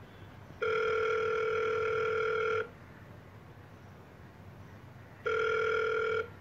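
Telephone ringing tone as a call is placed: a steady electronic tone at two main pitches rings once for about two seconds, pauses for over two seconds, and starts a second ring near the end.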